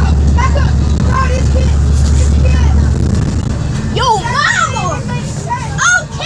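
A low steady hum that stops about halfway, then a child's high-pitched voice rising and falling in short cries.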